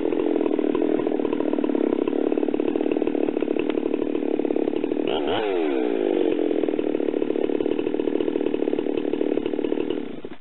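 Husqvarna 372XPW two-stroke chainsaw running at idle, a steady engine note that sags briefly and recovers a little past halfway.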